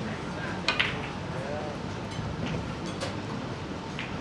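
Snooker break-off shot: a quick pair of sharp clicks from cue and balls, as the cue ball is struck and splits the red pack, about three-quarters of a second in. A few fainter ball clicks follow as the balls spread.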